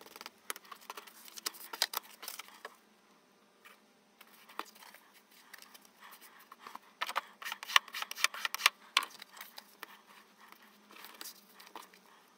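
Faint rustles, taps and scrapes of paper and grey board being handled and pressed down by hand on a cutting mat, scattered and irregular, busiest a little past the middle.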